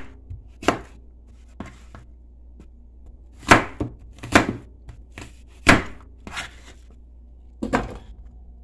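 Kitchen knife chopping an apple into pieces on a plastic cutting board: sharp, irregular knocks of the blade hitting the board, roughly one every second or so, with short pauses between cuts.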